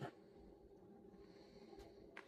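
Near silence: a faint dry-wipe marker writing on a whiteboard, with a faint tick near the end.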